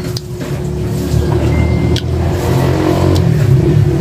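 A motor vehicle engine running close by, growing louder over the second half, over a steady hum, with a few short sharp clicks.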